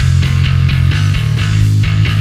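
Electric bass guitar played through a Joyo Double Thruster bass overdrive pedal set for a clanky tone. It plays a quick riff of short overdriven notes with a heavy low end and a bright, clanky top.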